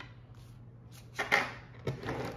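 Oracle cards being handled on a table: a few short, sharp card slaps and flicks a little past a second in and one more near the end, over a faint low steady hum.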